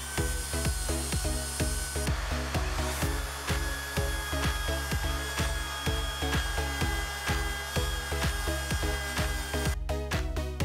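Background music with a steady beat over the steady whine of a power drill grinding the end of a steel threaded rod against an abrasive disc to sharpen it to a cone.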